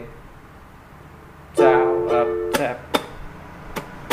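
Ukulele with a capo strummed in a down-up-tap-up, up-tap-up pattern, starting about a second and a half in. A loud ringing chord comes first, then quick strokes and short, sharp muted taps.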